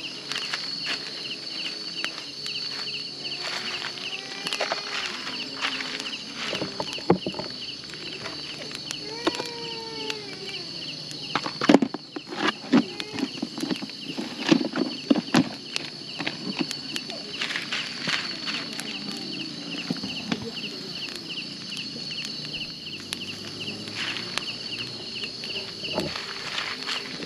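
Steady, high-pitched chirring of night insects, with a fast pulsing chirp beneath it. Occasional knocks and clatter come through it, the loudest about halfway through, along with a few faint distant calls.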